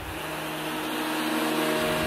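Electronic transition sound effect: a held chord of steady synthesized tones under a hiss, slowly swelling louder.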